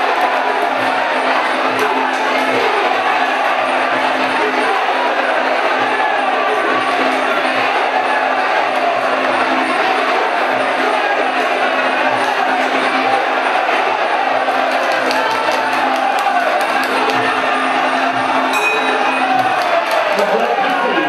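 Live Muay Thai fight music (sarama): a wavering reed-pipe melody over steady drum and small-cymbal strokes, with crowd noise from the stadium.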